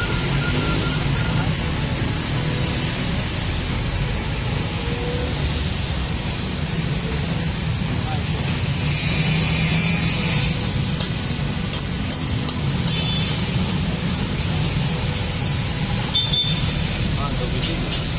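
Steady roadside traffic rumble with indistinct voices in the background, and a short burst of hiss about nine seconds in.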